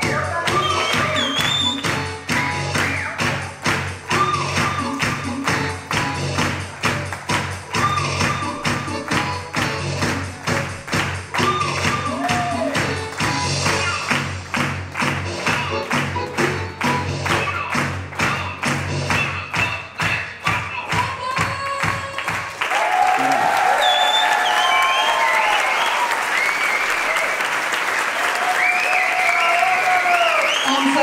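Latin dance music with a steady beat, a tango and cha-cha mix, playing for a couple's dance. It stops about three-quarters of the way in and gives way to audience applause and cheering.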